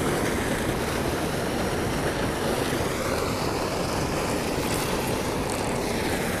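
Water pouring out of a spillway culvert pipe and churning into the pool below: a steady, even rush.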